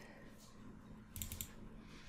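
Faint computer mouse clicks: one click, then a quick cluster of clicks a little over a second in, a double-click on the form field.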